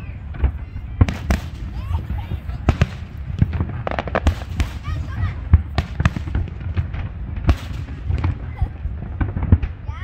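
Aerial firework shells bursting in quick, irregular succession: sharp bangs and crackle over a continuous low rumble. The loudest bangs come about halfway through and again near the end.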